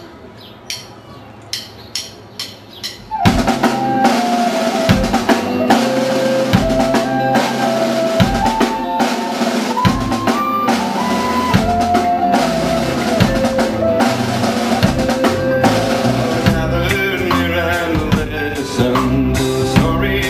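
A count-in of about five sharp stick clicks. About three seconds in, a live band comes in loud with an instrumental intro: drum kit, bass, guitar and mandolin playing a melody over a steady beat.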